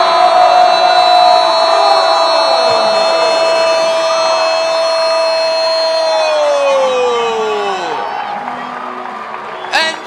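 A goal horn sounding for the home team's equalising goal. It holds one loud note for about six seconds, then slides down in pitch as it winds down, with a crowd cheering underneath.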